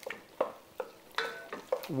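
Wooden spatula stirring a thick stew of salt cod in an enamelled cast-iron pot, breaking the fish apart. It makes a handful of short scrapes and taps against the pot, about one every half second.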